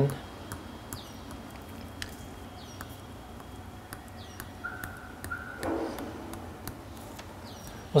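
Faint, irregular clicks and taps of a stylus tip striking a tablet's glass screen as quick hatching strokes are drawn. A few faint, short, high chirps sound in the background.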